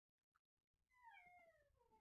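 Near silence; then, about a second in, a faint drawn-out animal call that slides down in pitch.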